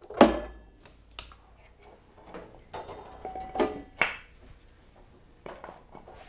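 Steel banding strap being cut with snips. A sharp snap just after the start is followed by scattered metallic clicks and clinks as the loose strap is worked free of the cylinder.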